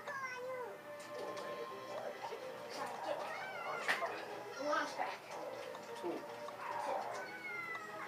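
A child's high-pitched squeals and sing-song vocal noises, rising and falling in pitch, over steady background music, with a single thump about four seconds in.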